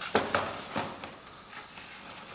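Light clicks and rubbing of EPS foam and plastic parts as the nose section of a foam RC jet model is pushed onto the fuselage, with a few short clicks in the first second.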